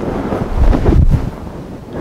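Low rumbling noise on the microphone, like wind blowing across it, surging unevenly and loudest about a second in.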